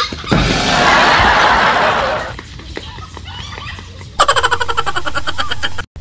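Edited-in comedy sound effects. A loud rushing noise lasts about two seconds, a few light clicks follow, and from about four seconds in a steady buzzing tone plays until it cuts off suddenly near the end.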